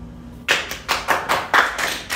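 Hand clapping that starts about half a second in: a quick, steady run of sharp claps, about five a second.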